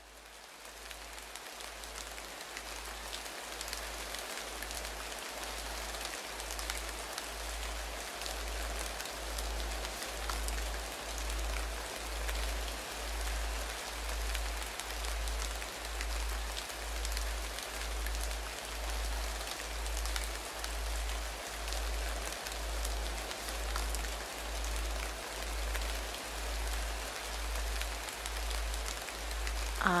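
A steady rain-like hiss fades in over the first couple of seconds, over a low hum that pulses about once a second: a binaural-beat meditation sound bed.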